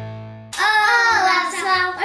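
The last chord of the intro music rings out and fades away. About half a second in, young girls' voices take over, singing out a long, high, sliding line.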